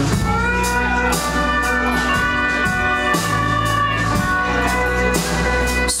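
Live band playing an instrumental stretch between sung lines. Long held chords sound over bass and acoustic guitar, with scattered drum and cymbal hits.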